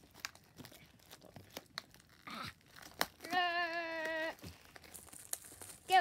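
Plastic shrink-wrap being peeled and torn off a cardboard booster box by hand: quiet crinkling with a few sharp clicks and crackles. About three seconds in, a steady high-pitched tone holds for about a second.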